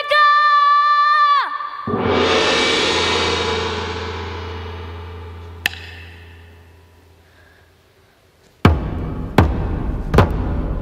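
Cải lương stage music: a long held high note ends, then a gong crash rings out and slowly dies away over several seconds. Near the end, heavy drum strikes begin, about one every 0.8 seconds.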